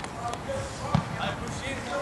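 A football thudding once on the pitch about a second in, over distant voices of players calling out.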